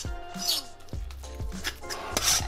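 Background music with a steady beat, with a metal fork scraping and stirring a soft cheese mixture in a ceramic bowl.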